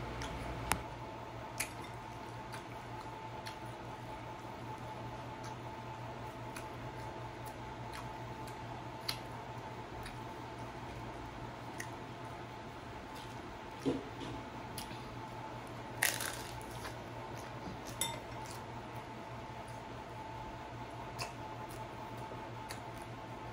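Electric fan running with a steady hum, over which come scattered sharp clicks and crunches of someone eating hard-shell tacos and touching a fork to the board, the loudest about sixteen seconds in.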